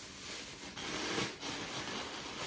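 Clear plastic shower cap crinkling faintly in short rustles as hands press and smooth it over the head.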